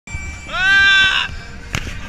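A person's long, high-pitched yell that swoops up and then holds one note for under a second, followed by a short click.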